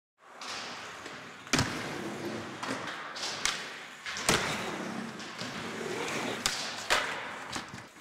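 Skateboard wheels rolling over ramps, broken by about five sharp board impacts from pops and landings, the first about a second and a half in and the last near seven seconds.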